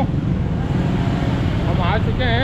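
Busy night street traffic: a steady low rumble of engines from vans, motorbikes and tricycles moving close by. A brief voice comes in near the end.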